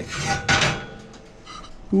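Victoria 8-inch cast iron skillet pulled off a metal oven rack: one short scrape about half a second in, followed by a few faint clicks.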